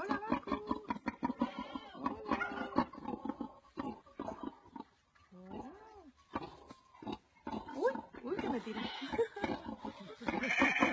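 Domestic pig grunting repeatedly while munching feed, with quick crunching chews between the grunts.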